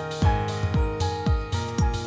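Intro music with a steady beat: a deep kick drum about twice a second under sustained pitched tones.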